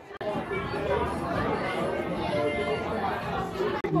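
Several people's voices chattering and overlapping, with no one clear speaker, cut off briefly just before the end.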